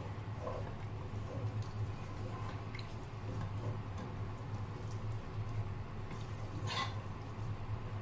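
Wooden spoon stirring coconut milk with pork belly pieces in a pot, giving soft liquid sounds and faint ticks against the side, over a steady low hum.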